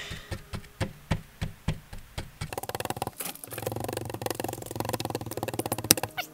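A small toy digging tool scraping and chipping at a wet dig block: separate scrapes and knocks at first, then fast continuous scratching from about halfway through.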